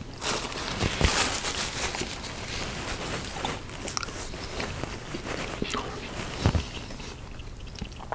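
Close-miked chewing and mouth sounds of a man eating, with scattered small clicks and soft rustles that come and go.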